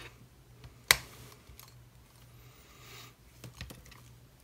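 Handling noise from a small black plastic USB aquarium air pump turned over in the hands: one sharp click about a second in, then lighter clicks and rustling near the end as its cable is unwound.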